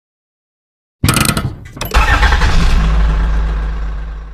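An engine start: a short crank with a few clicks about a second in, then the engine catches and runs with a deep, steady note that slowly fades out.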